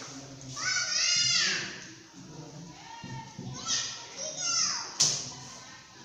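Children's voices calling out in high-pitched, falling cries: three calls, the first about a second in and two more around the fourth second. A single sharp knock comes about five seconds in.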